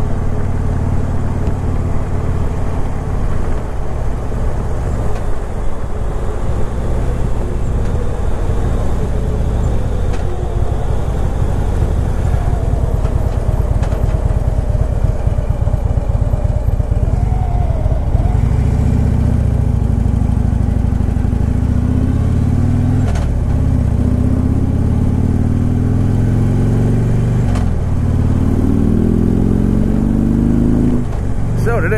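2015 Harley-Davidson Freewheeler trike's V-twin engine on its factory exhaust, heard from the rider's helmet. It runs at low revs for the first part, then about two-thirds of the way in it accelerates up through the gears: the pitch climbs and drops back at each of two shifts, then climbs again. Wind rushes over the microphone throughout.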